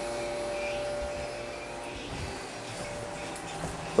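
Electric fans, a box fan and a small fan, running steadily off a 400-watt inverter on a 12-volt battery: an even whir with a steady humming tone in it. The inverter's low-battery whine has not started yet.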